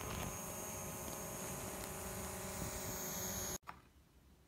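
DJI Mavic Pro quadcopter drone in flight, its propellers giving a steady buzzing hum with a high whine above it. The sound cuts off abruptly near the end.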